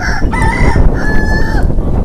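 A rooster crowing: one crow, well over a second long, starting shortly after the start.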